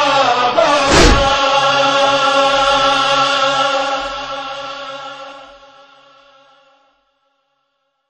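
Voices holding a long chanted note to close a noha lament, with one chest-beat (matam) thump about a second in. The chant fades away and has died out by about seven seconds in.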